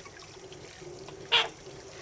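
Water running steadily from a hand shower onto a wet toy poodle puppy in a grooming tub, with one short, sharp sound a little over a second in.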